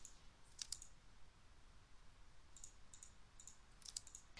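Faint clicks of a computer mouse and keyboard: a quick pair a little over half a second in, and a few more around the three-second mark, over a near-silent room.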